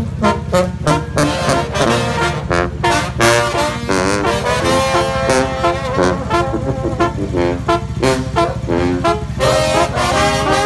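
Mexican marching brass band (banda de viento) playing a brisk tune: trombones, sousaphone, saxophone and clarinet over a steady bass drum and snare beat.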